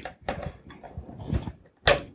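Light handling noises from fingers working wires inside a metal drive enclosure, then a single sharp snap just before the end as the plastic cable tie is cut through.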